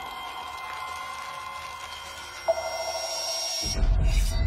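Logo-reveal sound design: steady electronic ringing tones like a sonar ping, a sharp new ping about two and a half seconds in, and a deep low rumble swelling in near the end.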